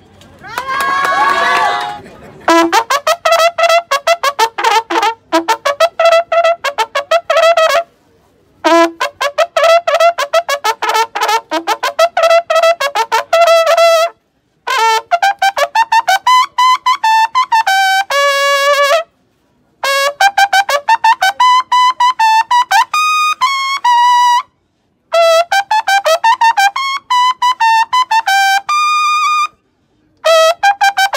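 Mexican military order bugle (corneta de órdenes) playing bugle calls: long phrases of very rapid tongued repeated notes that jump between a few pitches, broken by short pauses. A brief burst of voices comes just before the bugle starts.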